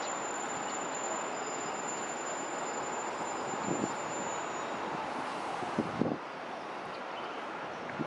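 Steady outdoor city background noise: an even rushing hiss of distant traffic and air. A thin high steady whine runs through it and stops a little past halfway.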